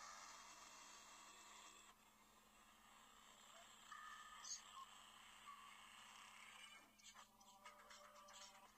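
Faint soundtrack of a Flash demo video playing through a phone's small speaker: electronic whooshes and tones, then music with a regular beat coming in about seven seconds in.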